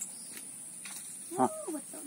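Quiet outdoor background with a single short vocal 'huh' about one and a half seconds in, over a faint, steady, high-pitched whine.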